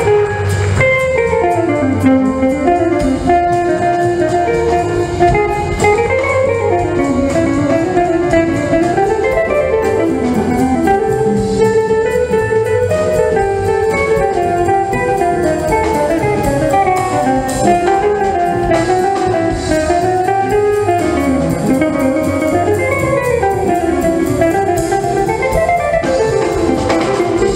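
Jazz piece with a guitar playing a quick, continuous line of single notes over bass and drums, at a steady level.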